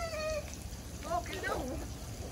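High-pitched voices calling: a drawn-out, slightly falling call at the start, then a name called in a wavering, sing-song voice about a second in.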